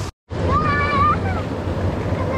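Steady rush of stream water with wind buffeting the microphone, starting abruptly after a brief cut to silence. A child's high-pitched call rises and falls about half a second in.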